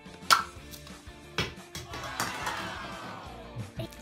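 Plastic LOL Surprise Confetti Pop ball being pulled open: a sharp snap a moment in, then a second click about a second later, as the shell pops apart. Background music plays underneath.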